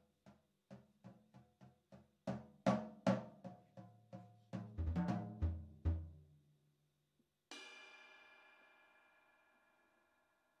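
Unaccompanied jazz drum-kit solo: single pitched drum strokes about three a second, growing louder, with a few deep bass-drum thumps, then a short pause. The band comes back in with one final chord that rings out and slowly fades, ending the tune.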